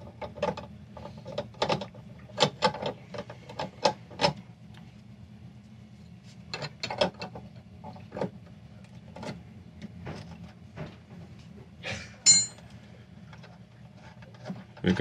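A steel wrench clicking and scraping irregularly on the brass terminal nut of a galvanic isolator's ground wire as the nut is loosened, with one sharper, ringing metallic clink near the end. A steady low hum runs underneath.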